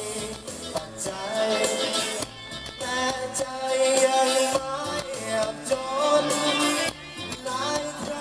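A man singing live into a handheld microphone over musical accompaniment, amplified through stage speakers.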